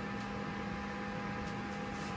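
Small electric fan running steadily on a homemade ice-box air cooler: a motor hum with a few steady tones over the rush of air.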